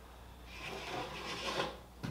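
Rubbing, scraping noise, swelling and then fading over about a second and a half, as the riveted aluminium fuselage shell is lifted and shifted on wooden sawhorses.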